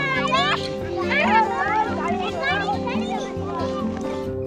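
Children's high voices talking and calling out to one another over background music with sustained notes.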